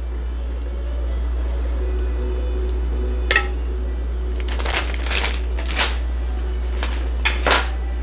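A wooden spatula stirring and knocking against an enameled pan of vegetables in broth, heard as a few short scrapes and knocks in the second half. Underneath are a low steady hum and faint background music.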